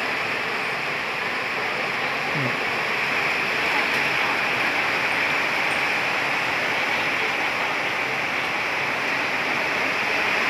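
Steady rain falling, an even hiss with no pauses.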